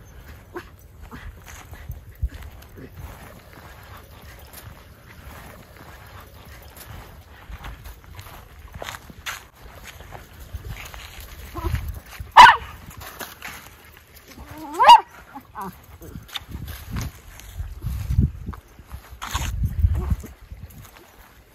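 Miniature schnauzer barking twice: a sharp single bark about twelve seconds in and a rising yelp a couple of seconds later, over low wind rumble and soft scattered steps on frozen ground.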